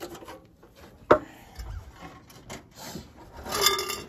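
A metal exhaust pipe being handled and fitted with hanger wire: a sharp knock about a second in, small clinks, and rubbing and scraping near the end.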